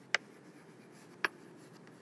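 Chalk writing on a chalkboard: faint scratching, with two sharp taps of the chalk about a second apart.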